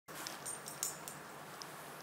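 A dog's metal collar tags jingling: a few light, high clicks and clinks in the first second and one more near the end, over a steady hiss.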